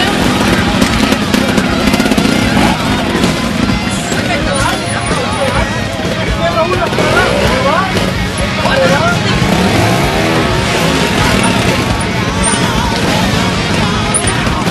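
Trials motorcycle engine running and revving as the bike climbs a steep rocky section, mixed with spectators shouting encouragement throughout.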